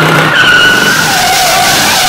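Car tyres squealing in a burnout: a wavering, high-pitched squeal over a loud hiss of spinning rubber.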